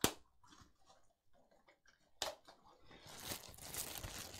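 Two sharp clicks, one right at the start and one about two seconds in, then plastic wrapping crinkling from about three seconds in as a small camera is unwrapped.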